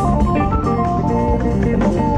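Jazz-fusion band playing live: a held, organ-like keyboard melody that climbs and then steps down, over electric bass, drums and percussion.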